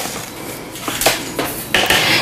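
A spoon clicking and scraping as chia seeds are scooped out of their container, with a short rustling hiss of seeds near the end.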